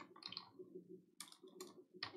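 Faint computer keyboard keystrokes, a few separate clicks, over a low steady background hum.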